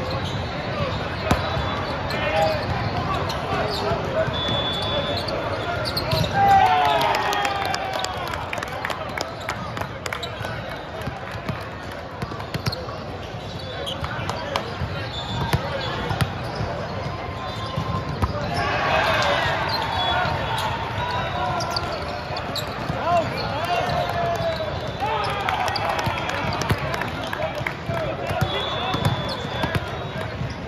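Volleyball play in a large echoing hall: sharp smacks of volleyballs being hit and bouncing on the court floor, with players and spectators shouting in bursts and a few short referee whistle blasts.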